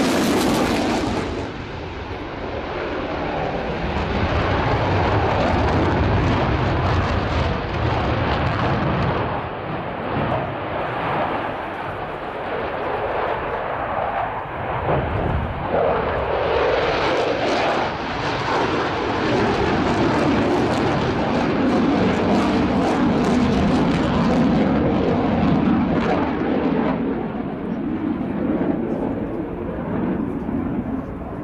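Jet noise from a Eurofighter Typhoon's twin Eurojet EJ200 turbofans, afterburners lit at the start, as the fighter manoeuvres overhead. The loud, continuous noise swells and fades as the aircraft turns, dipping briefly about two seconds in and again around ten seconds, and deepening in pitch in the second half.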